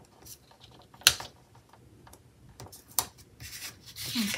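Quiet handling sounds of a paper planner: light fingernail taps and rubbing as a sticker is pressed down onto the page, with two sharper clicks, one about a second in and one near three seconds. A short paper rustle follows near the end as the page is lifted.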